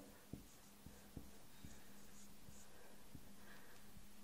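Faint marker strokes on a whiteboard: light taps and scratches as a word is written, over a steady low hum.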